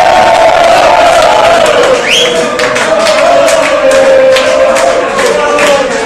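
A room full of football supporters singing a chant together at full voice, with hand claps through it.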